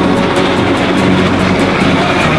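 Steam-hauled passenger train passing close, its locomotives and carriages rolling by, heard together with background music.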